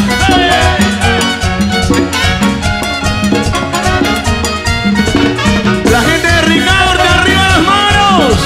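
Live tropical dance orchestra playing a salsa-style instrumental passage: percussion and drum kit keeping a steady rhythm under a saxophone section, with a melodic line falling off near the end.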